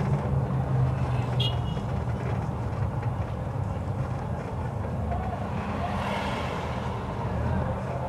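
Steady low engine hum heard from inside a vehicle moving slowly through city traffic, with street noise around it and a brief high-pitched beep about one and a half seconds in.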